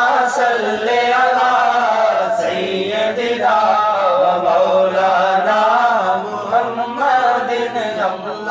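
A man's voice chanting an unaccompanied naat, devotional Urdu verse in praise of the Prophet, in long drawn-out melodic lines with few pauses.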